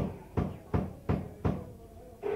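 Four sharp, evenly spaced knocks, about three a second, in a gap in a drum-heavy punk recording.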